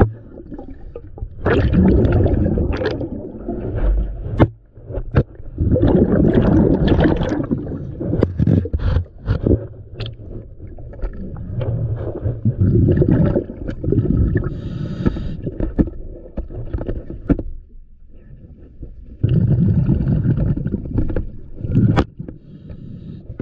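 A diver breathing through a regulator underwater: exhaled bubbles rush out in loud bursts every few seconds, with quieter inhalations and sharp clicks and knocks between them.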